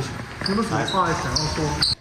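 Reporters' voices calling out questions over one another as they crowd around a man walking out of questioning.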